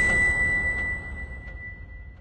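Closing ding of an electronic music sting: one high, steady ringing tone held as it slowly fades, over a low rumble that also dies away.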